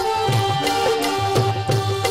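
Instrumental interlude of live Saraiki folk music: a held, sustained melody line over a steady rhythm of hand-drum strokes with deep thumps.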